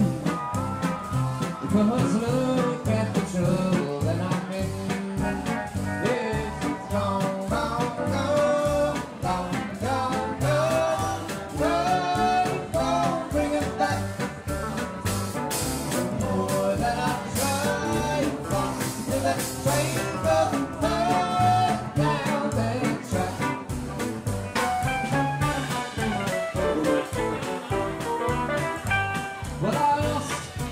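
Live country and western swing band playing an instrumental break: acoustic and electric guitars over upright double bass and drums, with a bending lead melody line over a steady swinging pulse.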